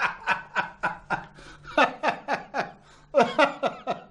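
A man laughing, a quick run of short chuckles, about four a second, each dropping in pitch, with a brief pause partway through.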